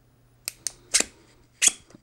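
Four sharp, unevenly spaced clicks from a handheld LED flashlight's switch being pressed over and over while the light fails to come on properly.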